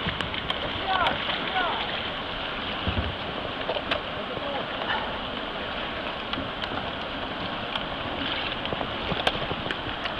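Shallow river water rushing through a logjam of fallen trees, a steady wash, with a few light knocks along the way.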